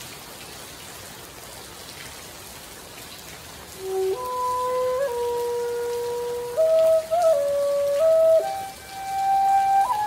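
Steady rain patter on a tent. About four seconds in, a homemade PVC transverse flute starts playing slow, held notes that step up and down in pitch.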